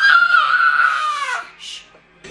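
A small boy's long, high-pitched squeal, held for about a second and a half and dropping slightly in pitch as it ends.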